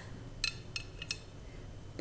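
A few light clinks of a table knife against a ceramic plate as the cut toast halves are nudged into place.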